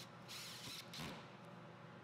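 Quiet handling sounds of a cordless drill-driver being lifted off a screw it has just driven into a scrap-wood strip: a light click, a short brush of noise and another faint click about a second in.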